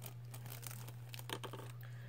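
Clear plastic wrapping crinkling and crackling in irregular short bursts as a small gift is unwrapped by hand, over a steady low electrical hum.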